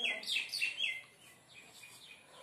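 A bird calling: a quick run of about four short chirps, each falling in pitch, in the first second, then fainter chirps after.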